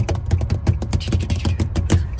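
A drumroll: a fast, even run of drum hits over a low rumble, building suspense before a reveal.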